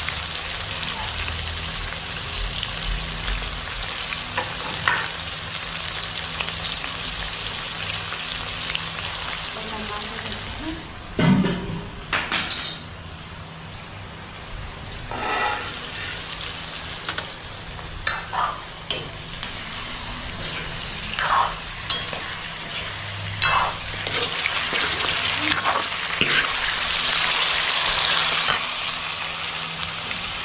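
Chicken pieces sizzling steadily in hot oil in a wok. A few brief knocks and clatters come through in the middle, and the sizzle grows louder for a few seconds near the end.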